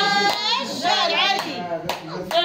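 Hands clapping in a small room, with a few sharp claps standing out over voices singing along.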